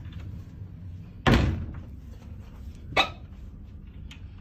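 Two knocks from a wooden wardrobe door being handled: a loud thud about a second in, then a shorter, sharper one near the end, over a low steady hum.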